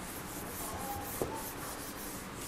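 Chalkboard being wiped with a duster: quick, evenly repeated scrubbing strokes, several a second, with a small click a little after the middle.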